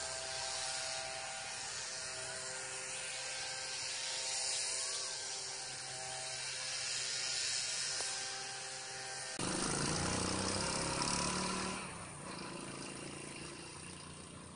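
A steady high-pitched hiss with faint steady tones under it. About nine and a half seconds in, a deeper rumble joins it. The sound drops and changes about twelve seconds in.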